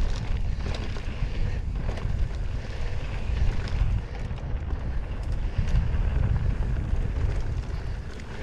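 Wind buffeting the GoPro's microphone as a mountain bike descends a dirt singletrack, with tyres running over the dirt and scattered clicks and rattles from the bike.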